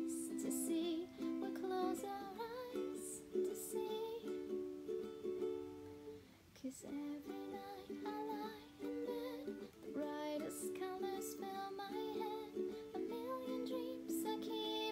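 Ukulele strummed in steady chords, with a singing voice over it for most of the passage. The strumming breaks off briefly about six and a half seconds in.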